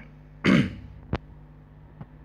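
A man clearing his throat once, about half a second in, followed by a single sharp click shortly after.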